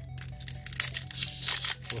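Foil Pokémon booster pack crinkling and tearing as it is opened by hand, with steady background music underneath.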